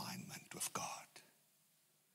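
A man speaking into a microphone at the end of a phrase. About a second in, the voice stops and there is a pause of near silence.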